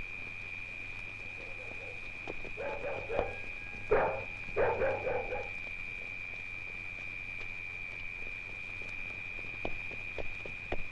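A dog barking in a few short bursts around the middle, over the steady high-pitched hiss and low hum of an old film soundtrack.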